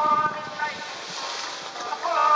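Background music with a sung vocal line: held sung notes, loud in the first half second, then a quieter passage.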